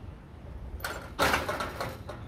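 A short, loud clatter a little over a second in, preceded by a sharp knock, over a low rumble of wind on the microphone.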